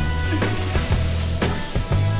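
Background music, over the fine hissing rustle of a pool of candy sprinkles shifting as a person crawls and flops down to swim through them.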